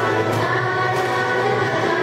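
A group of voices singing a church song together, with held notes.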